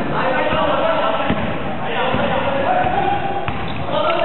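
A basketball bouncing on a sports-hall floor during play, several separate thuds, under people's voices calling out.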